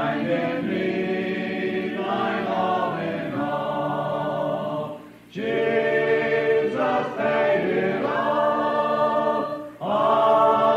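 A Primitive Baptist congregation singing a hymn a cappella, in long held notes, with a short break for breath about five seconds in and another near the end. It is heard from an old cassette tape recording.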